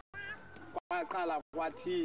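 High-pitched human voices in a crowd, sing-song and bending in pitch, with one held note early on. The sound cuts out completely for a split second about three times.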